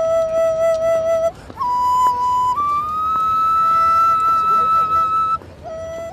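Solo flute music playing a slow melody of long held notes, one at a time, with a slight vibrato. It steps up to a long, high held note in the middle and drops back to a lower note near the end.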